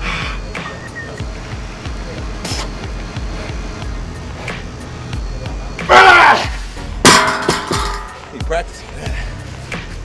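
A loud strained shout from the lifter about six seconds in. About a second later a heavy strongman log is dropped onto the lifting platform with a sharp crash that briefly rings. Music plays in the background.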